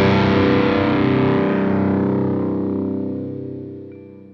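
Distorted electric guitar chord held and ringing out in post-hardcore rock, fading steadily from about halfway through: the close of a song.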